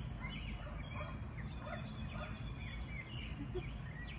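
Scattered short bird chirps, several a second at irregular spacing, over a steady low outdoor rumble.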